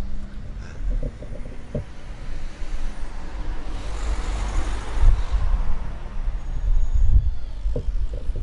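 A car passing along the street: its engine and tyre noise swells near the middle and fades away, over a low rumble of wind on the microphone.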